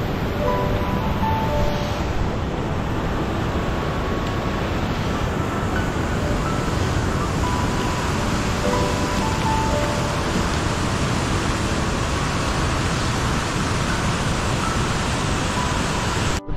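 Steady rushing of a fast mountain river's whitewater, with faint short musical notes over it.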